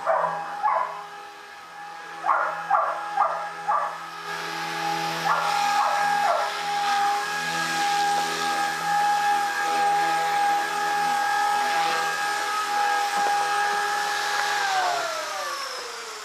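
Blade 180 CFX radio-controlled helicopter's electric motor and rotor whining steadily at a constant pitch, then falling in pitch as it spools down near the end. A dog barks in short runs of three or four barks during the first six seconds or so.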